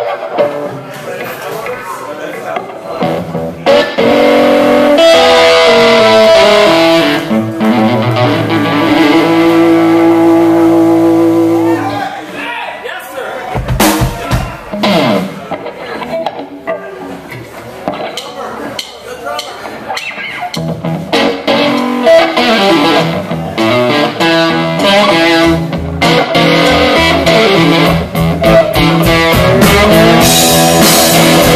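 Electric guitar played live through an amplifier: long ringing notes and chords, a quieter, sparser stretch about halfway through, then louder, busier playing building toward the end.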